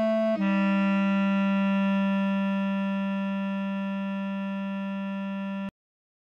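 Bass clarinet playing a short note, then a whole step down to a long held note (written B4 then A4) that slowly fades and cuts off suddenly near the end.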